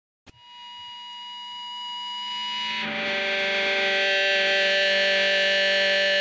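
Intro of a punk rock song: after a brief click, a sustained distorted electric guitar chord fades in and swells, moving to a new chord about three seconds in, with no drums yet.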